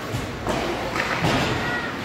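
Several sharp knocks and thuds from ice hockey play, as sticks, puck and players strike the ice and boards, echoing in the arena.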